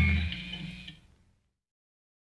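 The end of a punk rock song: the last guitar chord rings out and dies away about a second in.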